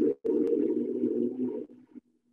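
An electric nut milk maker's blade motor runs with a low, steady hum. It breaks off for an instant a fraction of a second in, then winds down and stops just before the end as one of its blending cycles finishes.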